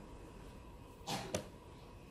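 A blitz chess move: a short scrape of a wooden chess piece on the board about a second in, followed at once by one sharp click of the chess clock being pressed.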